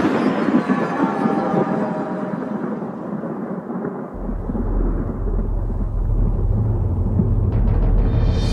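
Thunder sound effect: the rumble of a lightning crack fading away, then a deep steady low drone coming in about halfway through, with a few faint ticks near the end.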